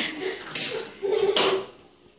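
Metal wire playpen panels rattling and clanking twice as a toddler grabs and pushes at the bars.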